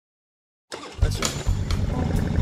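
Dead silence, then under a second in a motorcycle engine cuts in abruptly, running loud and low with uneven surges in level.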